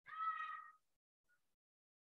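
A single short, high-pitched animal call at the start, lasting under a second.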